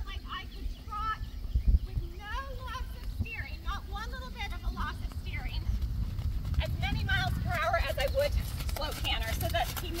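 A horse's hoofbeats on sand arena footing as it is ridden around the arena, over a steady low rumble.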